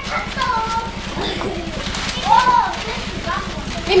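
Children's voices, a few short high-pitched calls and chatter, over a steady low hum.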